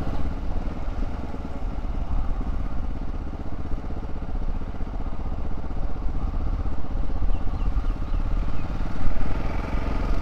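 Yamaha motorcycle's engine running at low town speed, heard from on the bike as a steady low rumble with wind and road noise.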